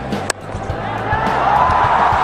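A single sharp crack of a cricket bat striking the ball, followed by stadium crowd noise swelling as the shot runs away for a boundary. A steady low beat of background music runs underneath.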